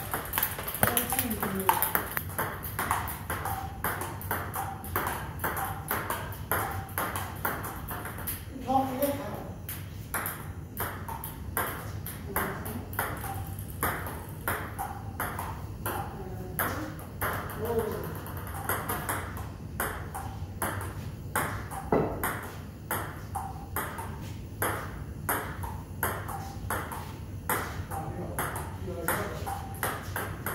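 Table tennis rally: the ball clicks off rubber-faced paddles and bounces on the table in a quick back-and-forth, about two to three hits a second.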